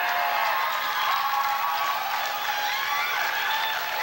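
Audience applauding and cheering, steady clapping with many voices calling out over it.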